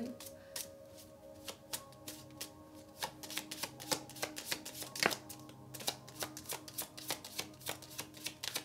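A deck of Romance Angels oracle cards being shuffled by hand, a run of irregular soft flicks and snaps several times a second, the sharpest about halfway through. Faint sustained background music lies underneath.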